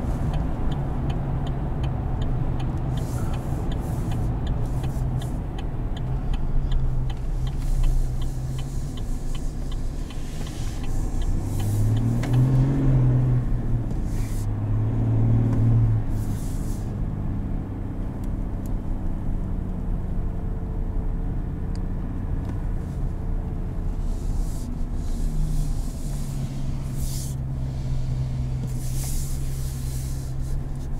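Cabin sound of a 2021 Chevrolet Silverado's 3.0 L Duramax inline-six turbo diesel pulling the truck at road speed, its engine note rising twice as it accelerates about a third and half of the way in, then settling back to a steady cruise. A light, rapid ticking runs through the first few seconds.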